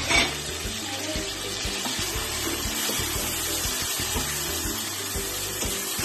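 Tomatoes, onions and spices sizzling steadily in hot oil in a cooking pot, with a louder burst of sizzle at the very start as they hit the oil. Background music plays underneath.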